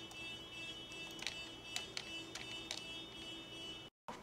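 A few faint computer mouse and keyboard clicks, spread over a couple of seconds starting about a second in, over a steady high electrical whine and low hum.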